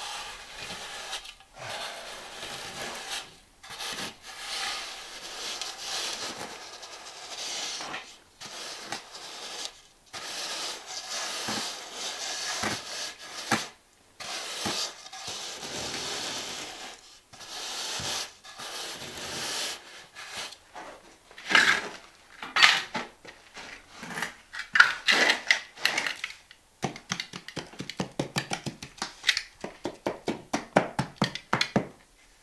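Straight edge (a box edge) dragged back and forth over a sand-and-cement deck-mud shower bed, a gritty scrape with each stroke of a second or two as it screeds the mortar flat. Near the end, quick light taps, several a second, as a trowel pats the mud down.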